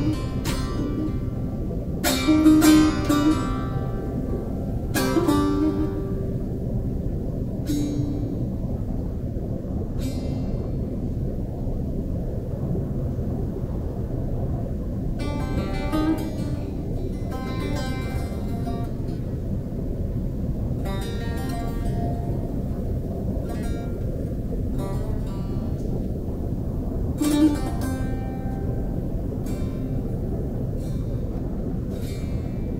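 Sparse plucked notes and short phrases on a string instrument, each note ringing out, over a continuous low rumble. The loudest notes come about two and five seconds in, a longer run of phrases falls in the middle, and a last note sounds near the end.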